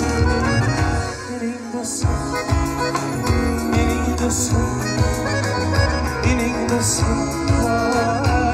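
Live band music: a keyboard lead over acoustic guitar, bass and drums. The bass and drums drop out briefly about a second in, then come back.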